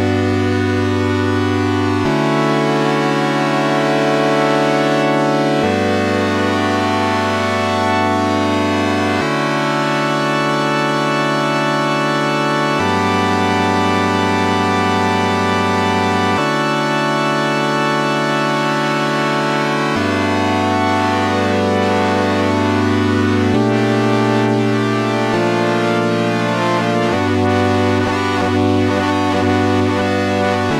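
GForce OB-E software synthesizer, an emulation of the Oberheim 8-Voice, playing a sustained chord progression with oscillator 2 synced to oscillator 1, giving a bright, buzzy tone. The chords change about every three and a half seconds, and the tone shifts over the last few seconds as oscillator 2's frequency is turned up.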